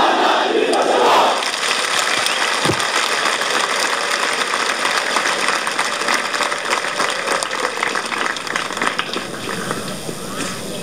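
Massed officer cadets shouting together, loudest in about the first second, then a steady crowd noise with many small sharp clicks running through it.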